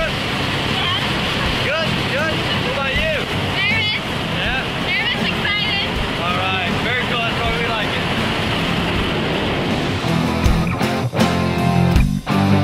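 Steady drone of a small jump plane's engine and propeller heard inside the cabin, with voices calling and laughing over it. Rock music with guitar comes in about ten seconds in.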